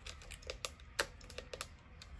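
Buttons and controls on a camera body clicking under fingertips: an irregular run of small sharp clicks, a few of them louder.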